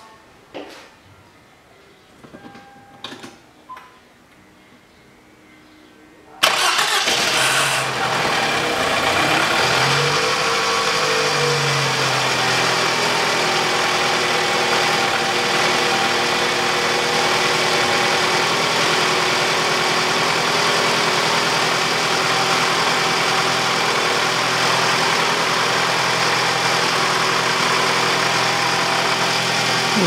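A Toyota Harrier's four-cylinder engine starting for the first time after a head gasket replacement. After about six quiet seconds it catches suddenly, the revs swell and settle within a few seconds, and it idles steadily. Just after it fires there is a rustle from the timing chain, which lasts until the chain tensioner fills with oil.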